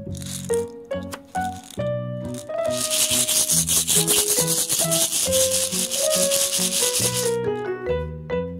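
Light keyboard background music, over which a toy surprise egg's wrapper is handled, rustling and crinkling loudly for about four and a half seconds from about two and a half seconds in.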